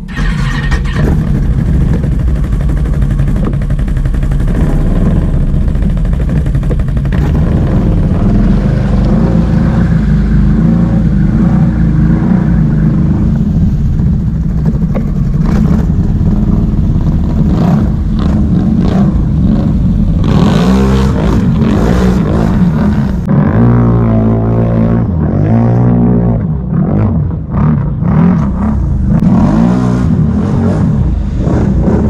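Can-Am Renegade X-MR 1000R ATV's V-twin engine running hard as the quad drives through deep water, with splashing. The engine revs up and down over and over in the last third.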